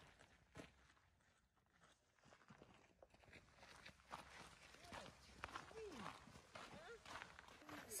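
Near silence on a hiking trail: faint footsteps on the dirt path and faint distant voices in the second half.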